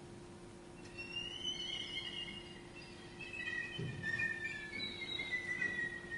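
Solo violin playing very high, thin notes that begin about a second in and slide slowly downward in long glides. A soft low thump comes near the middle.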